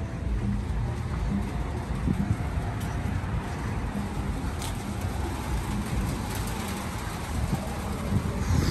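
Wind gusting across the phone's microphone: a rough, fluctuating low rumble.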